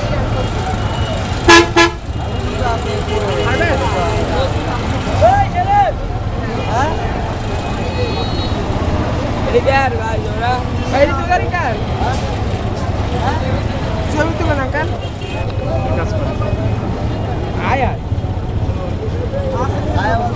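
A vehicle horn sounds once, short and loud, about a second and a half in, over people talking in the background and a steady low hum.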